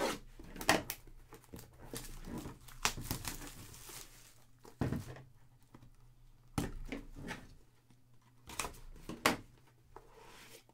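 Plastic wrap being slit with a blade and pulled off a cardboard trading card box: irregular crinkling and tearing, with several sharp clicks and knocks as the box is handled.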